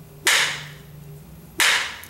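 Two hard polymer training blades struck together in a strength test: two sharp cracks about a second and a half apart, each ringing briefly. One is a bolo-style trainer, the other a half-inch marine-grade HDPE training sword.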